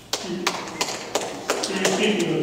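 A run of sharp taps, about three a second, starting suddenly, with a person's voice under them.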